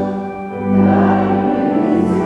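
A choir singing a slow hymn in long held notes, with a short dip between phrases about half a second in.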